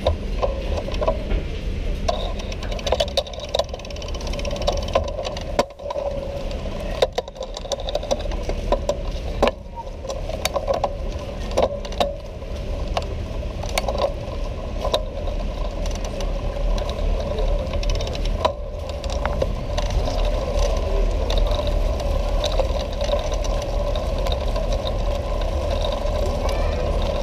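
A bicycle rattling and rumbling as it rolls over stone-mosaic cobble pavement, with frequent irregular sharp clicks from the frame and the camera mount, over a steady low city rumble.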